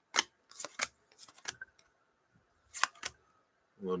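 Stiff chrome baseball cards being flipped through by hand: short, sharp clicks and snaps as cards are slid off the stack, coming in small clusters with brief quiet gaps between.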